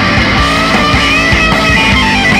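Loud heavy psychedelic rock band recording: electric guitar over bass and drums keeping a steady beat, with gliding lead notes on top.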